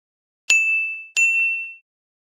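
Two bright ding chimes, about two-thirds of a second apart, each a single high ringing tone that fades quickly. It is a sound effect marking each magnet-ball block popping onto the plate in stop motion.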